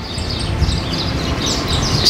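Several short bird chirps, high-pitched and repeated, over a steady background of outdoor noise.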